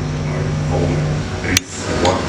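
Mains hum from a home-built transistor power amplifier through its speaker as the input and ground wires are handled by hand. The hum stops about a second in, followed by a single sharp click.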